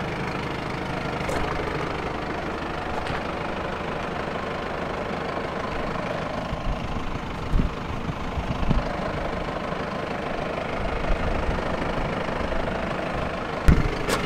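A 2013 Audi A3's engine idling steadily, with a few short knocks partway through and near the end.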